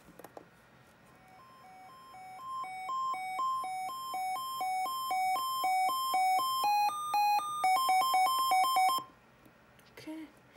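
Sangean weather alert radio running its siren test: a two-tone alert alternating between a low and a high beep, growing steadily louder. About seven seconds in it moves to a higher, longer pair of tones, then alternates faster, and it cuts off suddenly about nine seconds in.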